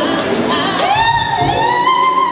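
Male vocalist gliding up into a high sustained note around B5 and holding it, over a live band.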